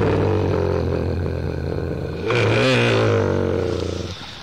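A man's long drawn-out hum, 'mmm', held on one low note, wavering and rising a little about two and a half seconds in, then breaking off.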